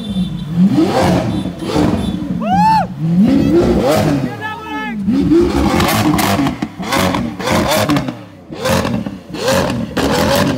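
Lamborghini Aventador's V12 revved again and again, its pitch climbing and dropping with each blip; from about halfway on, sharp exhaust pops and bangs come several times a second as the car spits flame from its exhaust.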